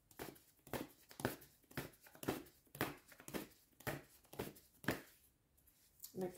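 Deck of tarot cards being shuffled by hand: a row of about ten soft card swishes, roughly two a second.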